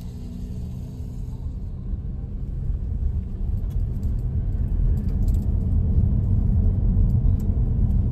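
Low road and tyre rumble inside the cabin of a 2023 Tesla Model S Long Range, growing louder as the car picks up speed from a crawl. A low steady hum stops about a second and a half in, and a few faint ticks come near the middle.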